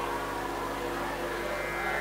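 Quiet steady drone of held musical tones from the kirtan accompaniment, with no melody and no voice.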